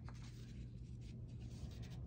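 Faint light scratching and rustling of a hand on paper, over a low steady hum.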